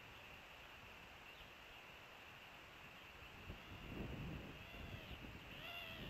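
Faint outdoor ambience with a steady high whine and a low rumble that swells about four seconds in. Near the end a distant animal gives a short call that rises and falls in pitch.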